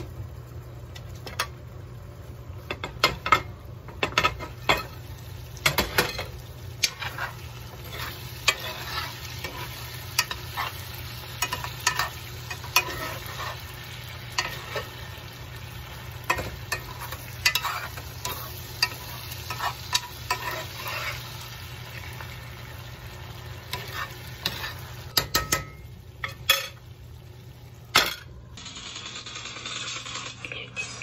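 Diced potatoes and bell peppers frying in a cast-iron skillet, sizzling steadily while a spoon stirs and scrapes them, with frequent sharp clicks and knocks of the spoon against the pan. A steady low hum runs underneath.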